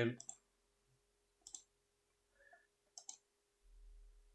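A few faint computer mouse clicks, spaced about a second apart, with a quick double click about three seconds in.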